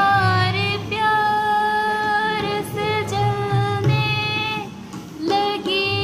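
A woman singing a ghazal in Hindi/Urdu, holding long, gently wavering notes, with a short breath break a little before the end.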